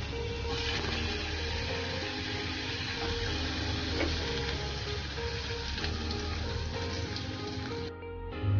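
Soft background music with held notes.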